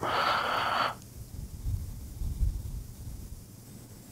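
A short soft hiss lasting about a second, then a quiet room with a few faint low bumps.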